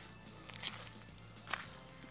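Faint background music with two soft footsteps on soil, about a second apart.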